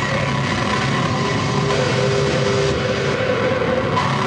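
Harsh electronic noise played live through effects pedals and a PA: a loud, dense wall of noise over a steady low drone, with a held higher tone partway through.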